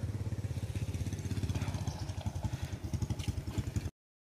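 A small engine running steadily with a fast, even pulse, cutting off suddenly near the end.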